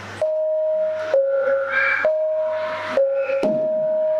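Javanese gamelan music starting up: a held, clear note that steps down and back up in pitch about once a second, each change marked by a struck onset.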